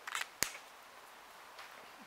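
A single sharp click a little under half a second in, after a faint rustle, then quiet room tone.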